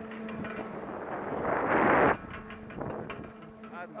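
Chairlift with a steady low hum from its running machinery as the chair moves off. About a second and a half in, a loud rush of noise on the microphone builds briefly and cuts off sharply.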